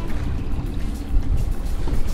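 Steady low rumble of wind and choppy waves against a small fishing boat, with the kicker outboard running underneath.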